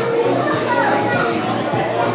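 Background music over the voices of people talking, children's voices among them, in a busy shop.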